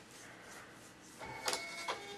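Receipt printer starting up about a second in: a steady mechanical whine with a couple of sharp clicks as the customer's receipt prints.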